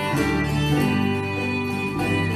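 Acoustic bluegrass band playing a carol live: fiddles carry the tune over strummed acoustic guitars.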